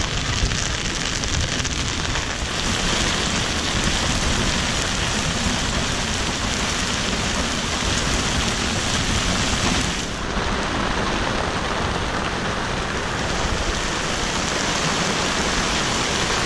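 Heavy rain and gale-force wind, a steady dense rush of noise that shifts slightly about ten seconds in.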